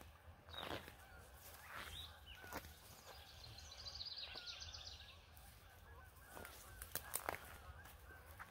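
Faint birdsong: a short chirp repeated again and again, with a higher trill about halfway through. A few soft clicks and rustles come through as mushrooms are cut with scissors and handled.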